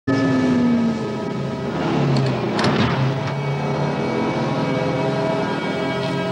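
Heavy diesel truck engines running steadily, with one engine note dropping slightly in pitch near the start.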